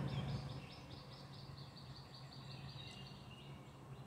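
A bird calling a rapid run of repeated high chirps, about five a second, for the first two seconds, then a fainter thin note, over a steady low hum.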